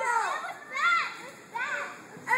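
Children's voices shouting from a crowd, three high-pitched calls in quick succession.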